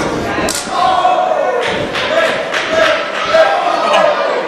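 A single hard thud about half a second in, a blow landing between two wrestlers, followed by crowd voices shouting and chanting.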